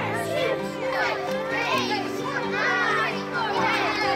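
A crowd of children's voices, shouting and chattering, over music with steady sustained chords.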